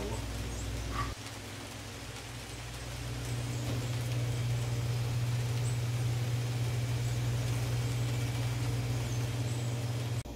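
Steady low machine hum that grows louder over the first few seconds and then holds, with a faint click about a second in.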